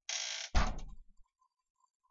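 A door being moved and shut: a short swish, then a thump with a brief rattle that dies away within half a second.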